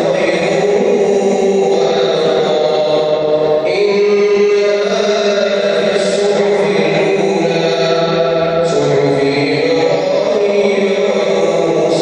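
Islamic prayer chanting: a man's voice reciting in long, held, melodic phrases, carried through a large reverberant mosque, with a new phrase starting about four seconds in and again near nine seconds.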